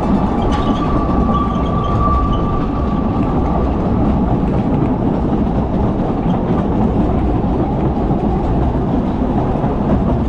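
Running noise of a narrow-gauge steam train heard from one of its carriages: a steady rumble of wheels on rail. A faint high steady tone is heard over the first three seconds or so.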